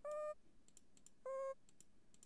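Two short note previews from a browser music sequencer as notes are placed in the pattern grid, the second a little lower in pitch than the first. Faint computer mouse clicks between them.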